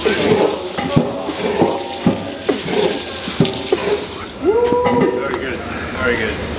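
Men's voices shouting and grunting over the effort of an arm-over-arm rope pull, with one long drawn-out yell about four and a half seconds in.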